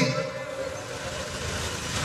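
A pause in a man's amplified speech: a steady background hiss and hum from the microphones and venue, after the tail of his last word right at the start.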